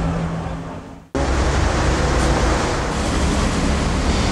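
City street noise with a steady traffic rumble and hiss. It fades out, then cuts back in abruptly about a second in.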